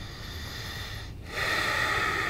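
A person's long breathy exhale that swells louder about halfway through, over a faint steady hiss.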